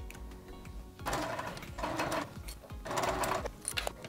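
Juki TL-2010Q sewing machine running as it topstitches a fabric strap, stitching in several short runs.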